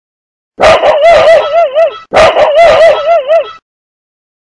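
A dog vocalising twice, two drawn-out calls about a second and a half each, their pitch wavering quickly up and down.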